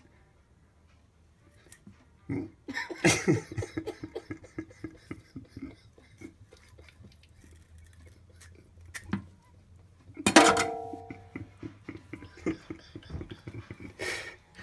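A man laughing, followed by faint clicks of knife work in the gutted fish, and a loud, brief voiced sound about ten seconds in.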